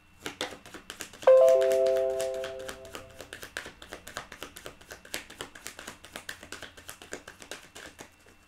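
Tarot cards being shuffled in the hands, a fast run of small clicks and taps. About a second in, a single bell-like chime rings out with several tones at once and fades away over about two seconds.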